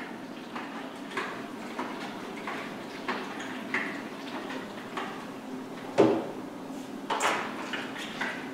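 Stop bath sloshing inside a hand-held film developing tank under constant agitation, a soft swish about every two-thirds of a second. A sharp knock about six seconds in and a louder swish a second later.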